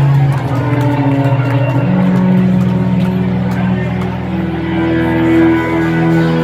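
Rock band playing live, opening a song with held, sustained guitar and keyboard notes that shift to a new pitch about every two seconds, before any singing.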